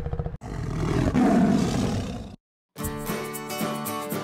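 A big cat's roar, like a lion's, lasting about two seconds, after a brief rapid pulsing that cuts off sharply. It ends abruptly, and music starts about half a second later.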